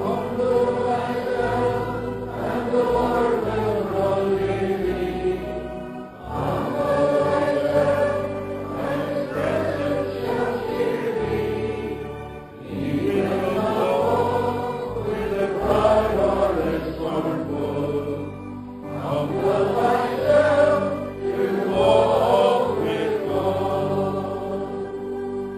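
A congregation singing a slow hymn together as a prayer. The lines come in long phrases with short breaks about every six seconds.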